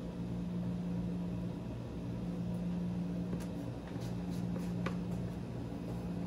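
Steady mechanical hum of kitchen equipment, with a few faint light clicks of a metal spoon against spice jars in the middle.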